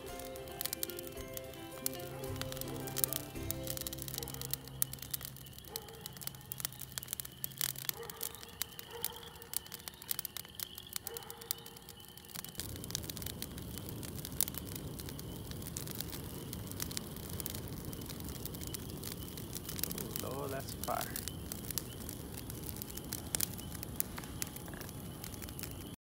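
Wood fire of sticks crackling, with many sharp pops throughout. Music with held notes plays over the first several seconds, and a denser rushing noise joins about halfway in as the fire burns high.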